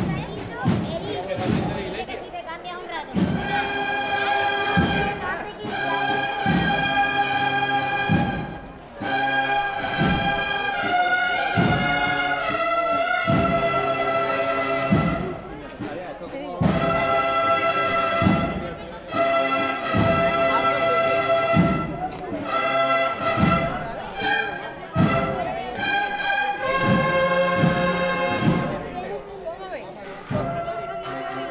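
A cornet-and-drum band (banda de cornetas y tambores) playing a slow processional march. Held cornet chords come in phrases with short breaks, over repeated drum beats.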